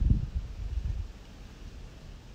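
Low rumbling buffets of wind on the microphone in the first second, dying down to a faint steady hiss.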